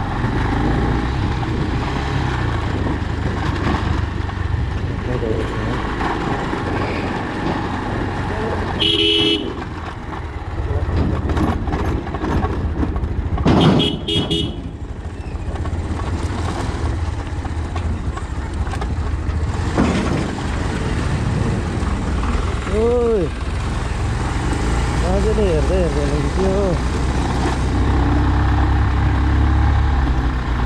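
Motorcycle engine running at low speed as the bike rides over a rough, rocky dirt road, with a steady low rumble. A short horn beep sounds about nine seconds in and again around fourteen seconds.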